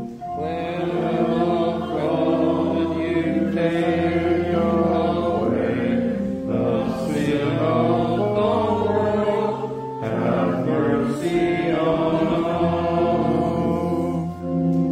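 A group of voices singing a slow hymn in phrases with short breaks, over steadily held organ chords.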